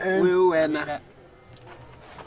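A man's voice holding a drawn-out vowel at a steady pitch for about a second, then breaking off into a pause with only faint background noise.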